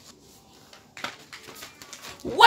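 Faint room tone with soft rustling and a few small clicks from about a second in, from a sheet of paper being handled.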